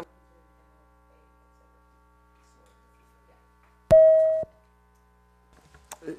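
A single electronic beep about four seconds in: one steady mid-pitched tone about half a second long that starts and stops sharply, against otherwise near-silent room tone.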